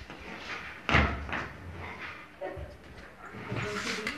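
A sharp thump about a second in, followed by a few short vocal sounds.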